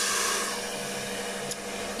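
Meat cutlets frying in oil in a lidded pan: a steady sizzling hiss that eases a little in the first half second, with a faint click about one and a half seconds in.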